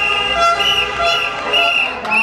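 Protesters' noisemakers sounding together in a loud, high-pitched steady tone with lower notes under it, pulsing about twice a second.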